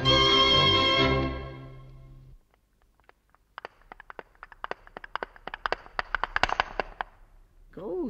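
An orchestral passage stops about a second in and its last chord fades out. After a moment of silence, the clatter of a horse's hooves comes in, a studio sound effect, growing louder as the horse approaches.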